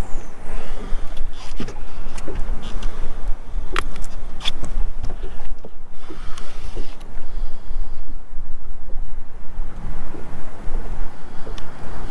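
Wind buffeting the microphone as a steady, gusting rumble, with scattered sharp clicks and knocks from a landed largemouth bass being handled and unhooked on the boat deck.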